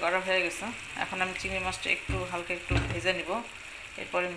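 Prawns and sliced onions frying in a pan of oil and spices, sizzling steadily.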